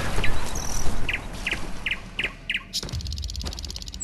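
Small bird chirping: a run of five or six short, evenly spaced chirps, followed near the end by a fast, high trill. A loud rushing noise dies away about a second in.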